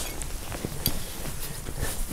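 Faint rustling and a few light ticks of a hand moving over a dry, crumbly garden bed, over a steady outdoor background hiss.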